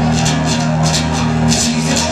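Acoustic-electric guitar strummed in steady chords through PA speakers, an instrumental stretch between sung lines of a live song.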